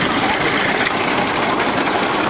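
Steady engine noise from vehicles running with the racing bullock carts, under crowd noise.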